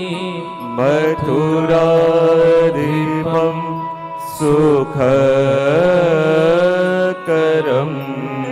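A man singing a devotional chant in long, gliding held notes over a steady low drone, pausing briefly between phrases.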